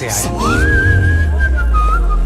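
Whistled melody over background music with a deep, steady bass. One whistled note glides up about half a second in, holds, then steps down in pitch near the end.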